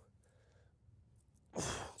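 Heavy breathing from a man exerting himself in a deep squat: the tail end of one hard breath at the very start, then another loud, hissing breath about one and a half seconds in.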